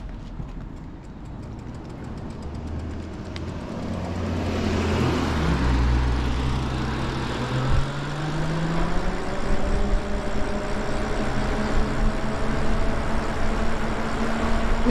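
Lyric Graffiti electric bike picking up speed: its motor whine rises slowly in pitch from about four seconds in, while wind and tyre noise grow louder. A single thump about eight seconds in.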